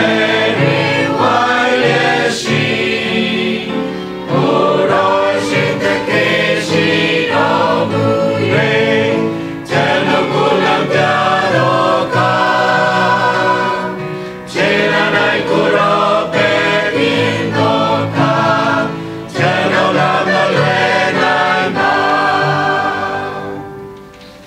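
Mixed church choir of men and women singing a hymn together in long phrases with short breaks between them; the singing ends near the close, the last chord dying away.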